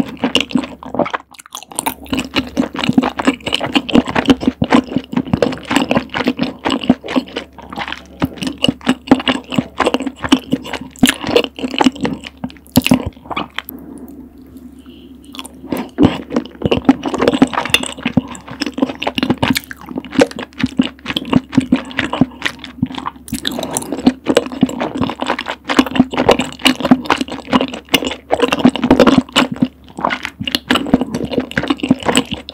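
Close-miked chewing of chewy rice cakes in a thick, creamy rose sauce: rapid wet, sticky mouth clicks and smacks. There is a short pause about halfway through.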